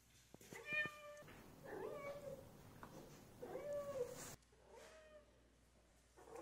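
Seal point Ragdoll cat meowing four times, each call about half a second long.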